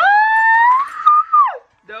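A woman's long, high-pitched squealing vocal note of delight, rising slowly, then sliding down and cutting off after about a second and a half.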